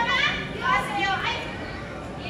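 A high-pitched voice calling out in a large hall during the first second and a half, then fading.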